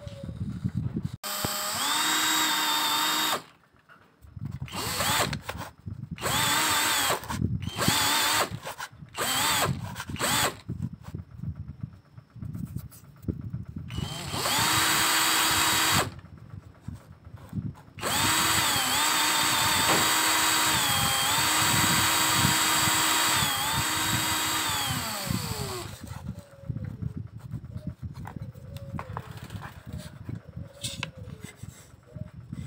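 Small bench drill press running in several spells with short bursts between, its motor whine sagging in pitch each time the bit is pressed into the wood. After the last long run, towards the end, the whine falls away as the motor winds down.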